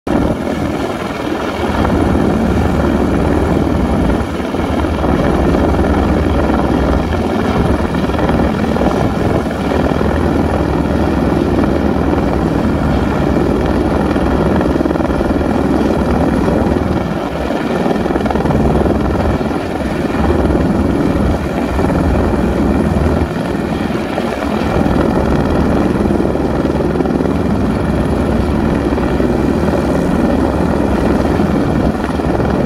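Helicopter hovering close overhead, its rotor and turbine noise loud and steady with a rapid rotor beat, while holding the sling line to a crashed light aircraft for an airlift.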